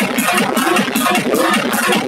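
Loud electronic dance music with a steady, fast, even beat, played for a crowd dancing; the recording has little bass.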